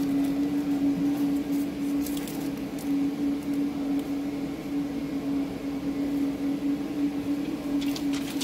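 Plastic protective film being peeled off a phone screen's glass and OCA sheet, a few faint crackles over a steady low hum.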